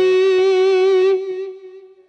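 Electric guitar holding a single note with vibrato at the end of a hybrid-picked diminished arpeggio. The note rings on, then fades away in the second half.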